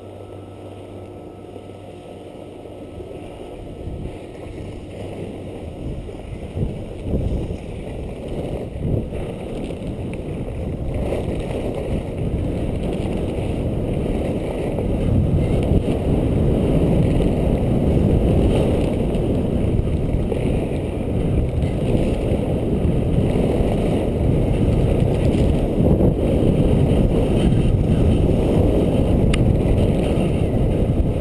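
Wind buffeting the microphone of a body-worn camera on a skier gathering speed downhill, with the skis hissing and scraping over packed snow. The rumble grows steadily louder for about the first fifteen seconds, then holds steady.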